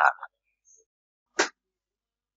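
A synthesized narrating voice finishes a word, then dead silence, broken once about one and a half seconds in by a single short blip.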